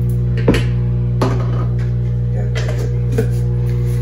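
A spoon knocking and scraping against a jar and a mixing bowl as a sticky spread is scooped out: a few sharp knocks, the loudest about half a second in, over a steady low hum.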